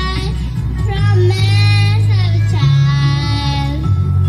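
A young girl singing into a microphone through a stage sound system, over a backing track with a steady bass. She holds two long notes with a slight vibrato.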